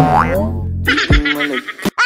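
Background music with a cartoon-style sound effect laid over it: a quick pitch glide that rises and then falls, followed by a low downward swoop about a second in. The music drops out near the end, with a sharp click just before the voices return.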